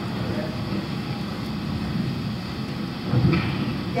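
Soundtrack of a horse video played back over room speakers: a steady rumbling noise that switches on suddenly, with a louder thud just after three seconds in.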